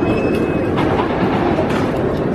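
Giovanola steel hyper coaster train running along its track, a loud steady rumble of wheels on steel rails, with a brief high whine in the first second.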